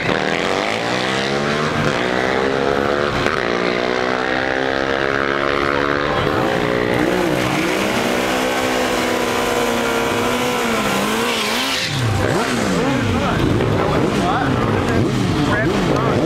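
Sportbike engine revved up and held at high revs while the rear tyre spins in a burnout. About twelve seconds in, the pitch drops and climbs again several times as the bike pulls away.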